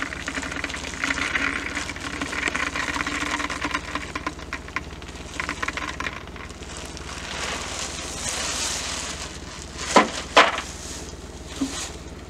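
Hollow plastic ignition spheres filled with potassium permanganate pouring from a plastic bag into a launcher's hopper, rattling and clattering against each other, with the bag rustling. About ten seconds in come two sharp clicks half a second apart, the loudest sounds.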